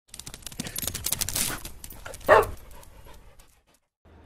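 Intro sound effect: a dense run of rapid crackling clicks that builds for the first two seconds, then a single short call falling in pitch a little after the middle, the loudest moment, before it all fades out.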